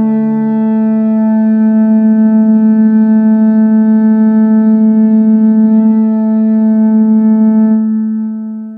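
Deep Viking-style war horn blowing one long, loud, sustained note, with a fast pulsing flutter in its low tone through most of the middle.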